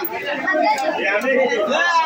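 Chatter: several people talking over one another, with a couple of faint ticks about a second in.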